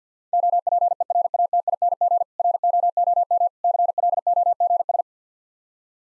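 Morse code sent as a single steady beep tone keyed at 50 words per minute, spelling out "OPERATING ROOM CLOGS". It runs in three rapid groups of dits and dahs with a short pause between words.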